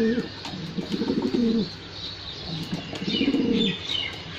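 Spike Jack pigeons cooing: three rolling, warbling coo phrases, one right at the start, one about a second in and one near the end.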